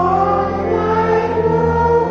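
Choral church music: a choir singing slow, held notes.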